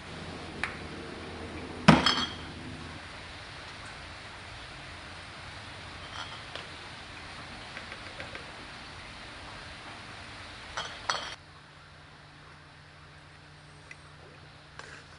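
Empty glass beer bottles clinking against each other as they are handled and set out, with one sharp ringing clink about two seconds in and two more clinks shortly before the end.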